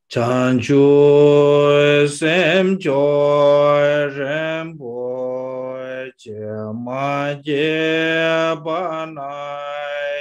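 A man chanting a Tibetan Buddhist prayer alone in a slow, melodic voice, holding long notes with short breaths between phrases.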